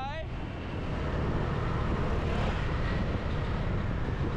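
Steady wind and road rush from riding a motor scooter, with a low engine rumble underneath; it grows a little louder about a second in.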